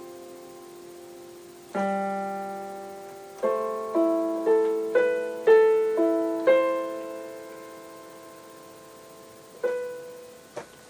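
Yamaha digital piano playing slowly: a held chord fading away, a new chord about two seconds in, then a run of single notes at about two a second over a held bass note. The notes ring out and fade, and one more note is struck near the end.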